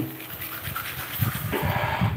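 A cup of dry, unwashed raw rice being poured into a frying pan of fried noodles: a rattling patter of grains hitting the pan, fuller in the second half.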